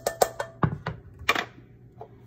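A dry metal saucepan being handled with sesame seeds going in: about six sharp taps and clinks in two seconds, the first ones ringing briefly.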